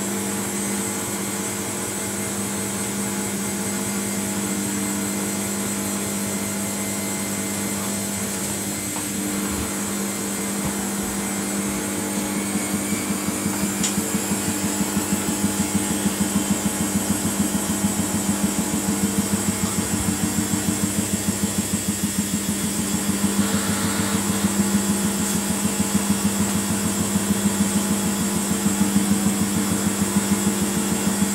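Samsung WF80 front-loading washing machine running mid-cycle, its drum spinning with a steady motor hum and whine. About twelve seconds in, a fast, even pulsing sets in and the sound gets louder.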